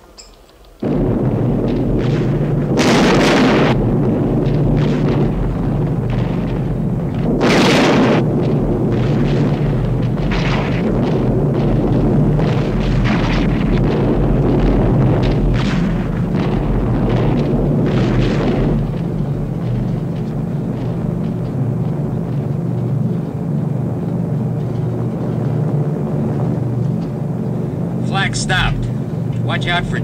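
Piston aircraft engines droning steadily, cutting in suddenly about a second in. Over the drone come heavy explosions and gunfire: two big blasts around three and eight seconds in, and more sharp hits until about two-thirds of the way through.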